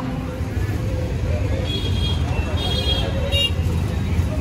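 Busy street traffic heard from an open auto-rickshaw in motion: a steady low rumble of vehicles and road, with a few short vehicle horn toots in the middle and second half.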